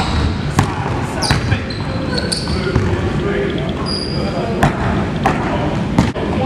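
Basketball dribbled on a hardwood gym floor, a few sharp bounces at uneven spacing, with short high sneaker squeaks in the middle and voices murmuring underneath.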